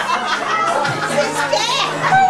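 Music playing with children's and adults' voices chattering over it.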